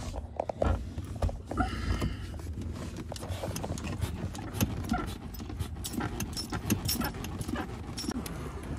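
Clutch pedal of a 1994 BMW 525i being pumped by foot while the clutch hydraulics are bled, with irregular clicks and knocks from the pedal and footwell and a few short squeaks.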